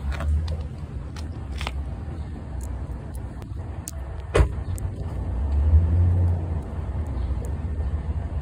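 Street traffic: a car's low engine rumble swelling as it passes about three-quarters of the way through, with a single sharp knock a little past halfway.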